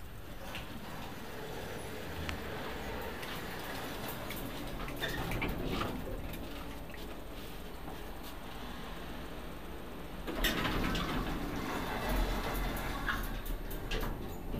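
Orona passenger lift in use: a steady hum inside the car with a few faint clicks, turning suddenly louder with a low rumble about ten seconds in as the car travels.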